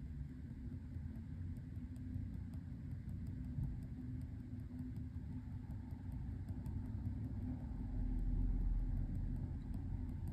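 Faint, irregular light ticks of a ballpoint pen tip dotting and hatching on watercolour paper, over a steady low background rumble and hum that swells briefly near the end.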